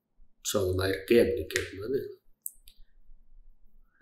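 A man lecturing in Tamil speaks for about two seconds and then breaks off. A few faint clicks follow in the pause.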